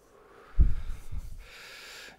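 A person blowing out a large cloud of shisha smoke, with a loud low puff of breath on the microphone about half a second in. The breath then trails off into a soft hiss.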